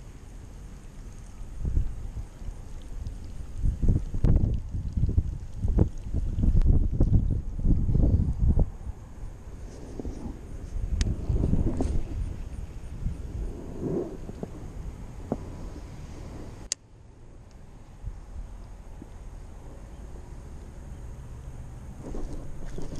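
Wind buffeting the microphone in irregular low gusts, mixed with handling noise as a baitcasting rod is cast, with one sharp click about three-quarters of the way through.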